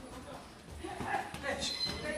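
Voices calling out in a boxing gym during sparring, with a short high electronic beep near the end from the round timer running down to zero.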